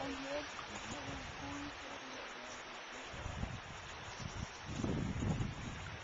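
Steady rush of a swollen creek, with a faint voice in the first second or so and low rumbles near the end.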